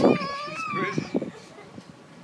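A toddler's high-pitched whining cry of protest as he is lowered toward cold pool water: a sharp outburst at the start, then a long wavering wail that fades about a second in.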